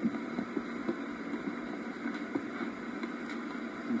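Steady hiss with a few faint clicks scattered through it: the background noise of an old camcorder tape recording.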